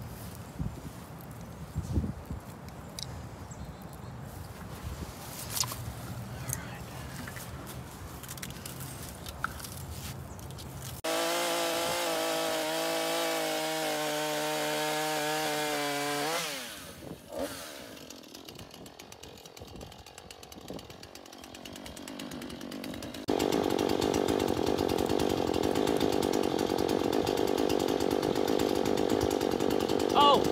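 Chainsaw cutting into a tree limb. It runs steadily for about five seconds from a third of the way in and then winds down; after a lull it runs again, louder and steady, through the last quarter.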